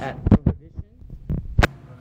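A few dull thumps and bumps of handling noise on a phone's microphone while the phone is turned around in the hand: two close together early on, then two more near the end.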